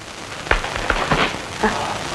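Steady hiss with scattered sharp crackles from a worn, old film soundtrack. A brief voice sound comes near the end.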